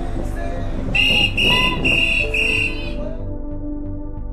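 A whistle blown in four short, high blasts in quick succession about a second in, over background music. The music carries on alone after the blasts stop.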